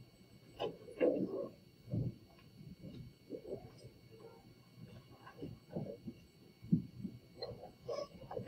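Faint, indistinct chatter of students talking quietly among themselves in a classroom, with a faint steady high tone underneath.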